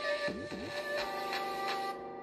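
Music playing from a homemade 3D-printed Bluetooth speaker: held steady tones, with two quick swoops down and up in pitch about half a second in.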